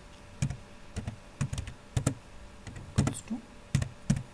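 Computer keyboard being typed on, irregular key clicks.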